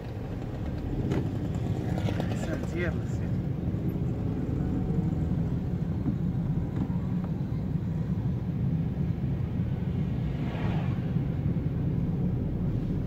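Small car's engine and tyre noise heard from inside the cabin as it drives along a street: a low, steady rumble that grows a little louder about a second in.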